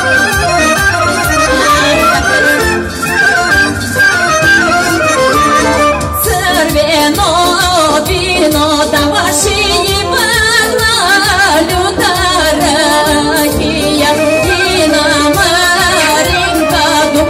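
Bulgarian Strandzha folk music played live through a PA as a horo dance tune over a steady beat, with a woman's voice singing the melody from about six seconds in.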